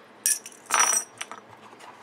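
Small metal eyelets clinking against each other in a clear plastic storage box as they are picked out: two short bursts of rattling, the second a little longer.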